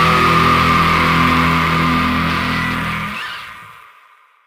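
Raw black metal track ending on a held, distorted guitar chord with a high feedback whine over it. The low end cuts off about three seconds in and the remaining ring fades out near the end.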